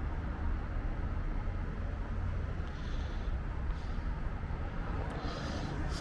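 Steady outdoor background noise: a low rumble with a faint hiss above it and no distinct event.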